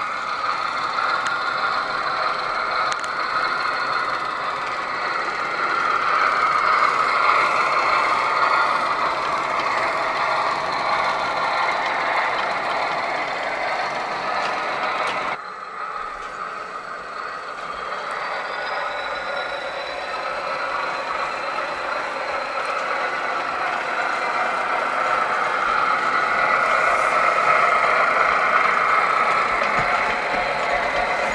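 O gauge model diesel locomotive and its train running along the track: a steady mechanical running noise of motor, gears and wheels on rail. It drops abruptly about halfway through, then builds again.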